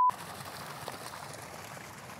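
A censor bleep, one steady pure tone, cuts off abruptly right at the start. It is followed by faint, steady outdoor background hiss with a single light tick just under a second in.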